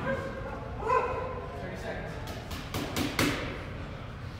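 A brief cry about a second in, then a few sharp thuds around three seconds in, over the background noise of a large gym hall.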